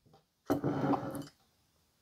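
A dish of beads sliding briefly across a wooden tabletop, a short scrape of under a second.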